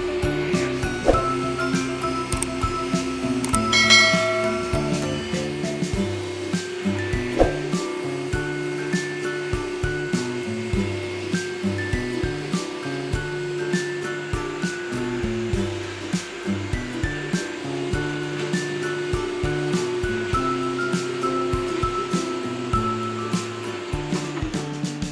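Background music with a steady beat, over the steady hum of a Kärcher single-disc rotary floor scrubber running on wet carpet.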